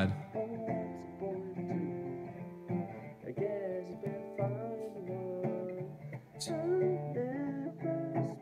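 A young man singing over his own strummed acoustic guitar, from a home-recorded cover that is being played back.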